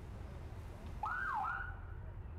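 A short police siren whoop about a second in: the pitch sweeps up, drops, then sweeps up again before cutting off, over a low outdoor rumble.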